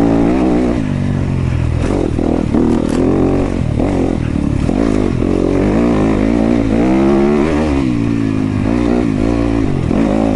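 Yamaha YZ250FX dirt bike's single-cylinder four-stroke engine, revving up and falling back again and again as the throttle is worked on the trail.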